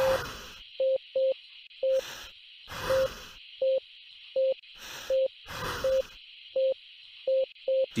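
Simulated cardiac monitor beeping once per heartbeat, the beeps spacing out to about one and a half a second as the heart rate falls from tachycardia after a 200 J shock. Between the beeps come the patient's heavy breaths, roughly one a second, over a steady hiss.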